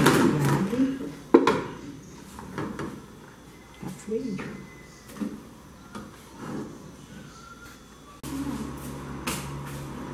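An aluminium baking tray handled on a gas stove grate, with one sharp metal knock about a second in, amid faint voices.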